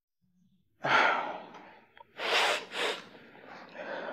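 A person sighs audibly about a second in, then takes two short, sharp breaths a little over two seconds in.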